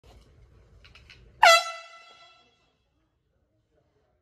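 Handheld air horn giving one sudden, loud blast about a second and a half in: a single steady blaring tone with many overtones that fades away over about a second.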